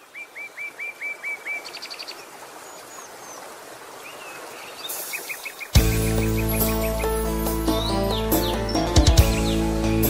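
Birds chirping in quick repeated runs, about five chirps a second, over a steady natural background hiss. About six seconds in, a song's backing music starts suddenly with a strong bass, and the chirping continues above it.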